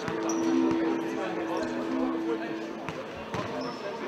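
Futsal ball being kicked and bouncing on a sports hall floor, a few sharp knocks echoing in the large hall, with players' and spectators' voices. A steady hum runs under the first two and a half seconds.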